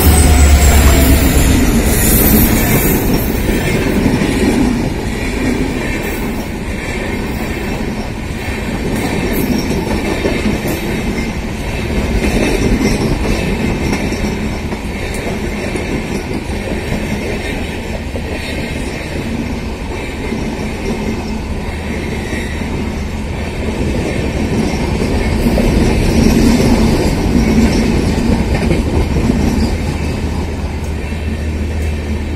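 A WDP4D diesel locomotive (EMD 16-cylinder two-stroke engine) passing close at the start, then a long rake of LHB passenger coaches rolling past on the rails. The coaches make a loud, continuous rumble that swells and eases as they go by.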